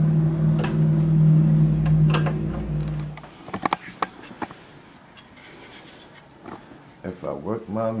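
A steady low hum that cuts off suddenly about three seconds in, followed by a few light clicks and knocks of hands handling a circuit board.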